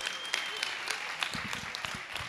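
Audience applause: many hands clapping.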